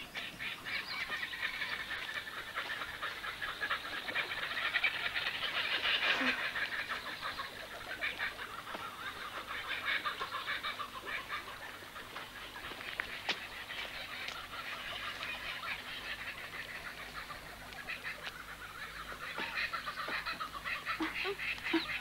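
Forest ambience: a dense, unbroken chorus of wild animal calls with fast pulsing. It grows louder about six seconds in and again near the end.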